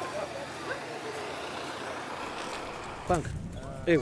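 Steady roadside traffic noise from a motor vehicle, with a voice breaking in briefly about three seconds in.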